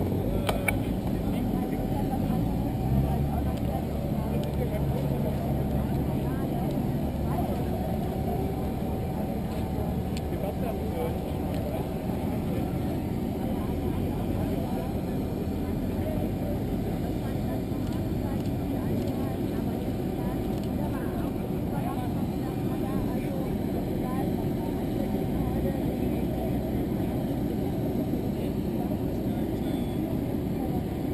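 Steady jet aircraft noise on an airport apron: a low rumble with a thin, even whine, and crowd chatter underneath.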